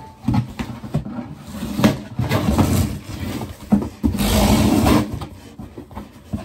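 Cardboard shipping box handled close to the microphone: a run of knocks and bumps, with two longer scraping, rubbing stretches, the louder one about four seconds in.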